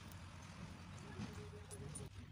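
Faint irregular taps and rustles of leafy greens being handled and bundled by hand over a plastic basket, over a low steady background hum.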